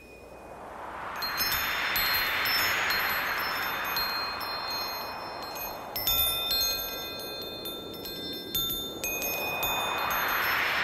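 Wind chimes ringing over a whooshing noise, like wind or surf, that swells up, fades away and swells again near the end. It is a sound-effect intro before the song proper begins.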